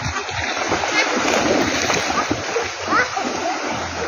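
Constant splashing of floodwater as people wade and run through it, with faint voices calling over it.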